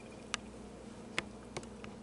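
Quiet room tone: a faint steady hum with four or five small, sharp clicks scattered through it.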